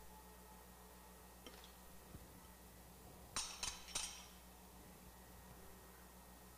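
Three sharp clinks in quick succession, a bowl knocking against hard kitchenware, just past the middle over a faint steady hum.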